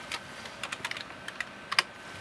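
Computer keyboard keystrokes: a few scattered key clicks as a number is typed in, with one louder keystroke near the end.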